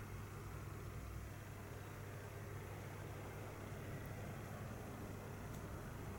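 Quiet room tone: a steady low hum with an even hiss, unchanging throughout.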